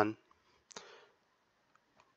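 A man's spoken word trails off, then a single short click sounds a little under a second in, with a brief faint hiss after it.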